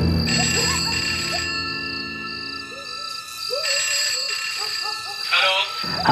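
A telephone rings twice, the first ring about a second long and the second nearly two seconds, over a steady chirping of crickets. A low music drone fades out in the first second or so, and a voice begins just before the end.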